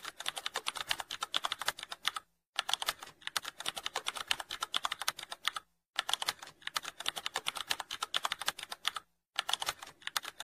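Computer keyboard typing: rapid, steady keystroke clicks in runs broken by three short pauses.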